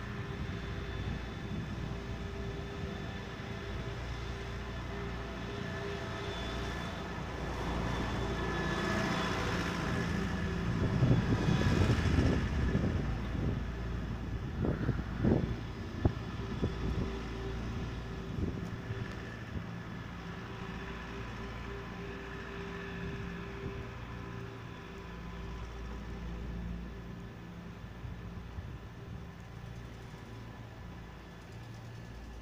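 City street traffic ambience: a steady low rumble, with a vehicle passing that swells to its loudest around the middle and fades away. A few short sharp knocks follow soon after.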